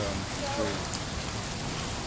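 Steady rain falling, a continuous hiss with scattered small drop ticks.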